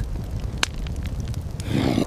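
Low steady rumble, with one sharp click about half a second in and a short swell of noise near the end.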